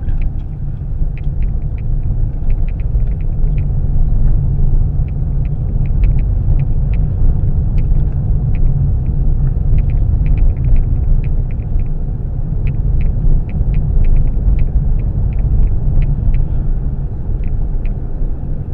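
Road noise inside a moving car's cabin: a steady low rumble of tyres and engine, with frequent light ticks and rattles from the car going over a bumpy road that needs repair.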